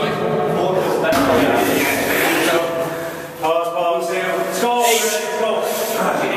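Indistinct men's voices in a gym room, with no clear words.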